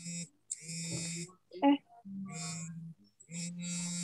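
Buzzy, distorted audio from a video-call participant's microphone. A steady low electrical buzz with harsh high hiss comes and goes in short stretches under a second long, and a brief murmur of voice breaks in partway through.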